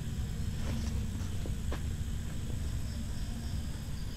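A steady low rumble with faint insects chirring high above it, and a couple of soft clicks a second or two in.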